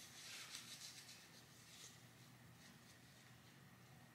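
Near silence: faint rubbing of a facial wipe against skin, fading out over the first couple of seconds, then only quiet room tone.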